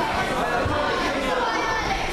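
Chatter of many overlapping voices in a large hall, at a steady level.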